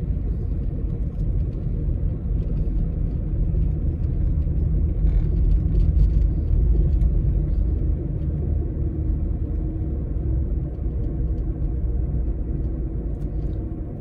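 Steady low rumble of a car driving along a city street, heard from inside the cabin: tyre and engine noise at a constant cruising speed.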